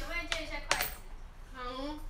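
A woman's brief wordless vocal sounds at the start and again near the end, the second rising then falling in pitch, with a single sharp click about three-quarters of a second in.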